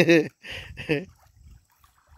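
A man's voice in short utterances.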